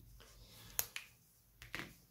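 Small handling sounds from a briar pipe being turned in cotton-gloved hands: one sharp click just under a second in, with a few fainter ticks around it.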